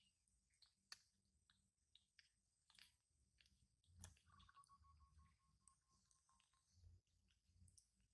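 Near silence with faint, scattered clicks of a baby macaque chewing a peeled rambutan. A faint steady high tone runs for about two seconds in the middle.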